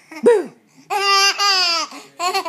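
A toddler laughing: a short falling squeal, then a long high-pitched laugh broken once in the middle.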